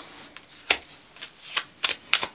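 Cards being handled: three light, sharp snaps and taps, spread over the two seconds, as a small card is laid down onto a spread of tarot cards.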